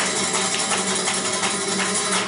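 Live flamenco music: a fast, even rhythm of hand clapping (palmas) and sharp percussive strikes over guitar.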